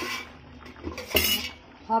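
Metal kitchen utensils clattering against cookware: two short clanks about a second apart, the second louder.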